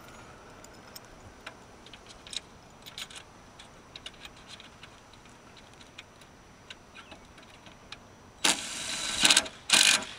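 Scattered light metallic clicks and ticks of solar-panel mounting hardware being handled at the rail, then a cordless power driver runs in two short, loud bursts near the end, driving down the top end clip that holds the squared module to the rail.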